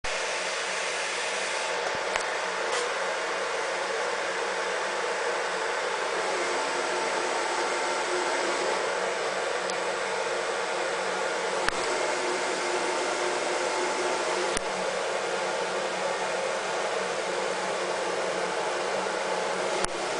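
Steady rushing hum of a running fan, with a few faint clicks.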